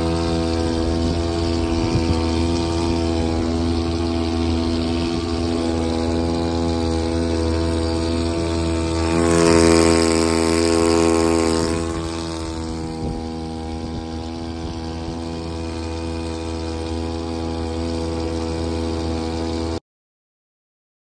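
Boat motor running at a steady speed while the boat is underway. About halfway through, the rush and splash of water along the hull swells for a few seconds, then eases. The sound cuts off abruptly near the end.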